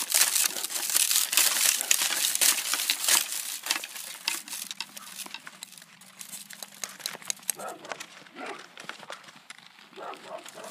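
Frozen leaves on a shrub crackling and rustling as a hand handles them: a dense run of crisp crackles for the first few seconds, then sparser, quieter ones.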